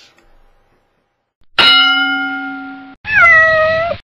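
A single bell-like ding that rings out and fades over about a second and a half, followed by one cat meow about a second long whose pitch dips and then holds.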